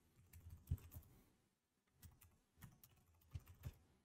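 Faint typing on a computer keyboard: irregular keystrokes in a few short clusters with brief pauses between them.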